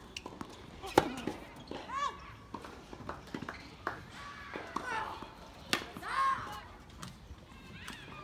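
Sharp cracks of tennis balls being struck and bouncing on hard courts, the loudest about a second in and again near six seconds, mixed with several short calls that rise and fall in pitch.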